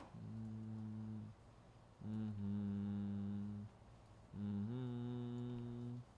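A man humming a slow tune: three long held notes with short breaks between them.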